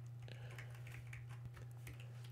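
Faint computer keyboard typing: a scattered handful of light keystrokes over a steady low hum.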